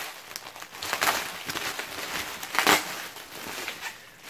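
Bubble wrap crinkling and crackling as it is handled and pulled open, with two louder rustles, about a second in and near three seconds.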